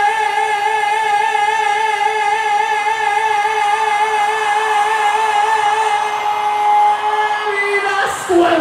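A singer holds one long note with a steady, even vibrato while the band is silent, the pitch dipping slightly just before the end. The brass band comes back in right at the close.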